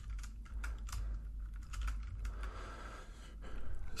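Typing on a computer keyboard: a run of quick key clicks, thickest in the first second and a half, then sparser.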